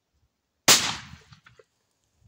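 A single shot from a black-powder muzzleloading shotgun (bate-bucha), sharp and loud, about two-thirds of a second in, dying away over about half a second.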